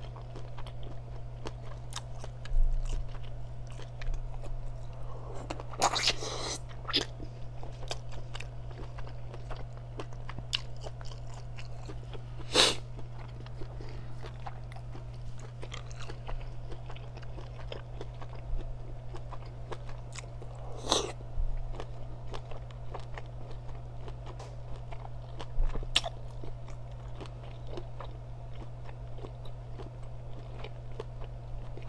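Close-miked eating of a seafood boil: chewing and biting, with scattered sharp clicks and a few louder cracks as snow crab legs and other pieces are broken and handled. A steady low hum runs underneath.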